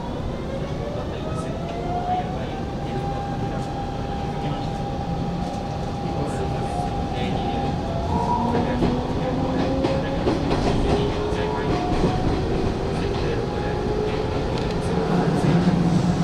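Hanshin 5500 series electric train pulling away and accelerating: the traction motor whine rises slowly in pitch in several tones, growing louder as it gathers speed. From about halfway, wheels click over rail joints.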